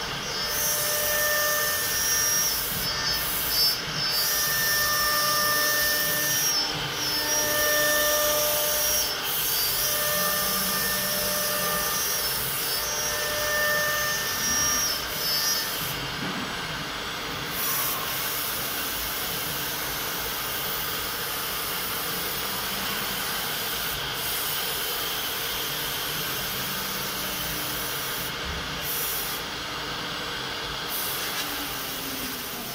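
Three-spindle CNC wood router (STM1325-3T) running, its spindle cutting a groove into a wooden cabinet-door panel: a continuous rushing noise of the cutter in the wood. Over it, a whine comes and goes every second or two for the first half. From about halfway the sound runs steadier and slightly quieter.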